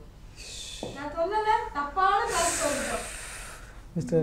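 A person's wordless vocal sounds: a short breathy hiss, a voiced sound that slides up and down in pitch, then a long loud hissing breath.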